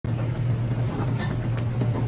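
Steady low rumble of commercial kitchen equipment, with a few faint scrapes of a paddle stirring lamb curry in a large metal pot.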